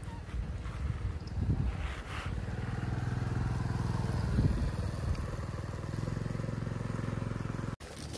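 A motor vehicle's engine running at low revs, a steady low hum that swells slightly a couple of times and cuts off suddenly near the end.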